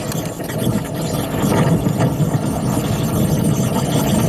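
Wind buffeting the microphone: a rough, low rumble that grows louder over the first second or two.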